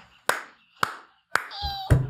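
A man clapping his hands three times, about half a second apart, while laughing hard.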